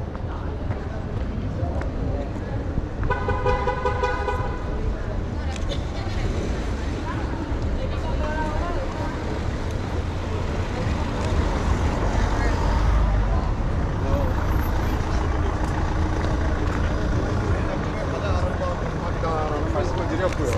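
Busy city street ambience: a crowd of voices over a low traffic rumble. A vehicle horn sounds once for about a second and a half, about three seconds in.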